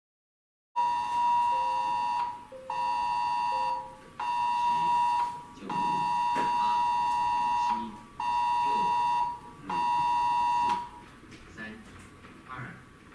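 Earthquake warning alarm: a loud high electronic tone sounding in six long blasts of one to two seconds each with short gaps, stopping about eleven seconds in.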